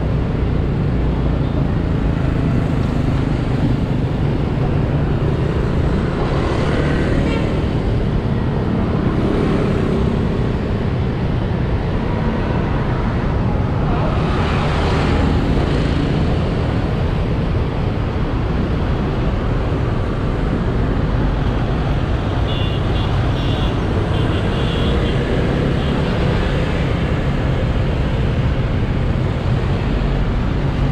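Steady rumble of a motor scooter riding through dense motorbike traffic, heard from the moving bike: its engine, road noise and wind on the microphone, with other motorbikes swelling past now and then.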